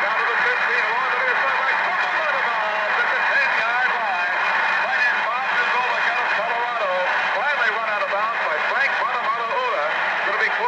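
Play-by-play broadcast voices talking continuously over steady background noise, on an old recording that sounds thin and lacks the high end, with a faint steady high tone beneath.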